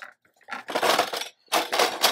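Metal folding chair being set down and shifted on a concrete driveway: two scraping clatters, one about half a second in and a louder one about a second later.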